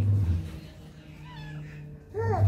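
Tabby kitten giving two faint, short high mews in the second half. A low steady hum, the loudest sound here, stops about a third of a second in.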